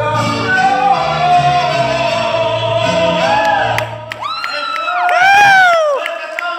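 A man singing a ranchera-style song into a microphone over backing music, holding long notes, then breaking into several rising-and-falling cries, the last one longest and loudest.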